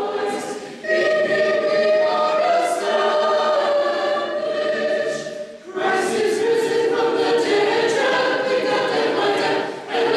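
Church choir in a rough live recording, singing an Orthodox Paschal hymn in harmony. Long held chords come in phrases, with short breaks about a second in, just before six seconds, and near the end.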